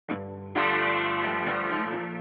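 Guitar opening a trap instrumental beat. A quieter guitar note sounds at the very start, then a fuller chord about half a second in rings on, with no drums yet.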